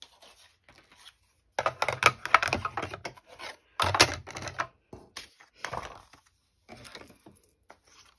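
Clear plastic cutting plates, a metal die and cardstock being handled and fed through a small hand-cranked die-cutting machine: clattering and scraping in several bursts, loudest about two and four seconds in.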